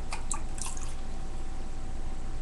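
Water poured from a plastic measuring cup into a small glass vial to rinse it out: a few faint splashes and drips in the first second.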